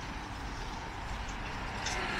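Steady outdoor street noise: the hum of road traffic with a low rumble.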